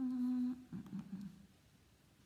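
A woman humming a short "mmm" on one steady note for about half a second, followed by a brief, lower, wavering murmur.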